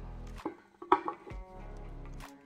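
Wooden violin back plates knocking against each other as the two halves of a two-piece back are handled: a few sharp knocks, the loudest about a second in. Background music plays underneath.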